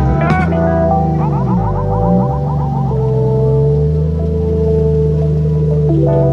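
Background music: sustained chords over a bass line that dips and rises about a second in, with a quick run of short notes above it.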